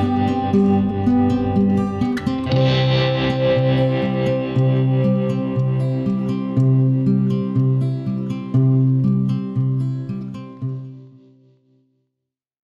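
Guitar-led instrumental close of a song, chords over a stepping bass line, fading out about eleven seconds in.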